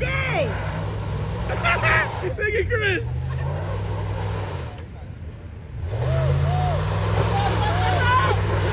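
Pickup truck's engine held at steady high revs as the stuck truck tries to climb a steep concrete embankment. The engine eases off for about a second just past midway, then comes back on.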